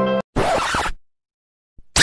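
A short rasping zip-like noise lasting about half a second, then silence, with a second louder rasp starting right at the end as the music drops out.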